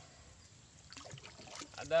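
A wooden paddle dipping and stroking through shallow pond water beside a wooden canoe, with faint splashes and trickling drips starting about halfway through.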